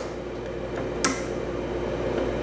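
A single short, sharp metallic click about a second in, as a small pin is worked free from the forward/reverse shift mechanism of a Kawasaki Mule transmission, over a low steady hum.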